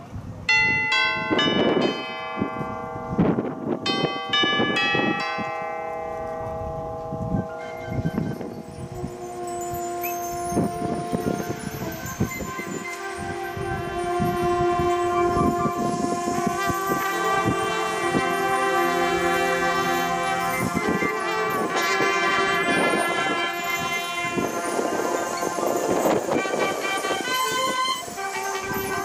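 A marching band's show opening. Mallet percussion and bells ring out in separate struck notes for the first several seconds. Then long held wind and brass chords build in, with percussion hits underneath.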